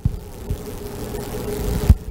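Handling noise from a handheld microphone being passed to the next speaker: a few low thumps, at the start, about half a second in and near the end, with rubbing rumble over a faint steady hum.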